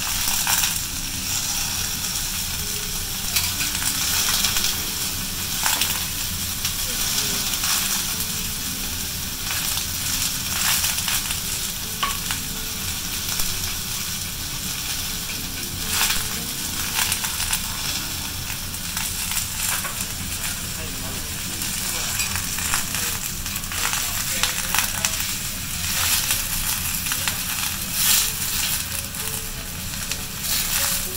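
Food sizzling steadily on a hot steel teppanyaki grill: fried garlic and a thick A5 Kobe beef steak searing. Scattered short clicks and scrapes of the chef's steel knife and spatula on the grill plate come through the sizzle.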